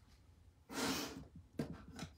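A woman's sharp, effortful exhale, about half a second long, as she strains at a stuck lid on a container of furniture wax, followed by a few faint clicks.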